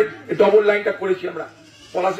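Speech only: a man speaking forcefully into a handheld microphone, with a short pause in the second half.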